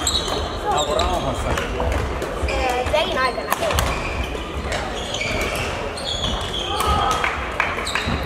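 Badminton hall sounds: sharp racket hits on shuttlecocks and footfalls on the sports floor from several courts, with voices calling out in the background.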